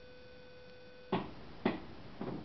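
A faint, steady electrical whine stops about a second in, followed by two sharp clicks about half a second apart.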